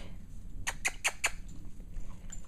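Four quick, light clicks in a row, about five a second, around the middle, over faint room noise.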